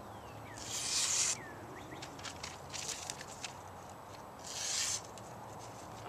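Spyderco Paramilitary 2 folding knife blade (S30V steel, full flat grind) slicing through thin phone book paper: three cuts, each a short papery hiss. The clean slicing shows the edge is still sharp after chopping and batoning wood.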